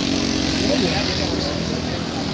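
City street traffic: a steady hum of vehicle engines over a constant noisy wash, with faint voices of passers-by a little under a second in.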